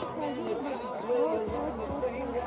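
Overlapping voices of several people talking at once, a murmur of chatter with no single clear speaker.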